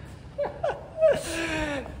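A man's voice making a few short wordless sounds that fall in pitch, then one longer call that slides down and trails off.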